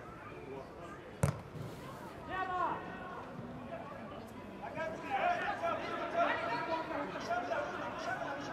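A single sharp thud of a football being struck, about a second in, as a corner kick is taken. Footballers' shouts and calls follow, thickest over the second half as the ball comes into the penalty area.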